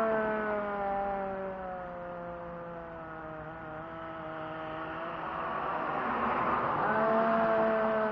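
A young woman's long, drawn-out "ohhh" groan, sliding slowly down in pitch for about five seconds, then a second held groan near the end. Road traffic noise swells behind it in the second half.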